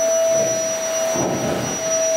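Red canister vacuum cleaner running with a steady whine, its floor nozzle being pushed over carpet to pick up confetti; the rushing noise swells briefly about a second in.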